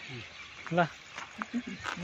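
Faint, broken speech in a quiet stretch between louder talk, with one short click near the end.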